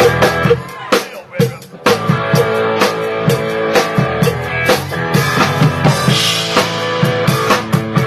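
Live band playing a song on guitar and drum kit with a steady beat. About a second in the band drops out briefly, with only a few drum hits, then comes back in.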